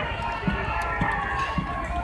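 Several people's voices over street noise, with low footstep thuds about twice a second.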